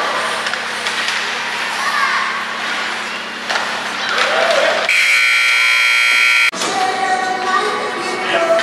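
Ice-rink noise of skates and spectators' voices, then an arena horn sounds about five seconds in, a loud steady tone held for about a second and a half that cuts off suddenly. Arena music follows near the end.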